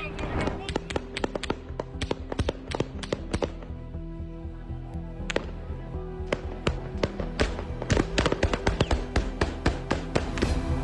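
Gunfire: many sharp shots in quick, irregular succession. There is a dense volley in the first three and a half seconds, a lull with a few single shots, then another dense volley from about six and a half seconds on, over background music.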